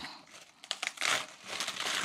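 Crisp napa cabbage leaves crinkling and crackling as a split head is pulled apart by hand: a few short crackles, then two spells of rustling about a second in and near the end.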